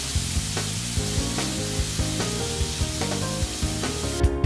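Oil sizzling steadily in an electric takoyaki grill pan as oyster takoyaki balls fry, with occasional light clicks of chopsticks turning them in the wells.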